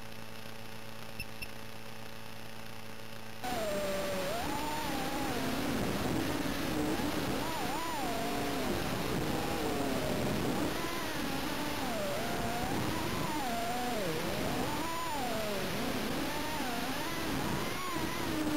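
Micro FPV quadcopter's brushless motors whining, the pitch swooping up and down every second or so as the throttle and stick inputs change. It starts suddenly about three and a half seconds in, when the quad arms and takes off, after a steady electrical hum.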